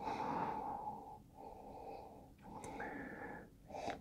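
A person sniffing a beer's aroma with the glass at the nose: three long, faint intakes of breath through the nose, the first the loudest.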